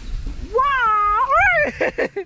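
A high, drawn-out meow-like call, about a second long, that holds its pitch and then rises and falls at the end.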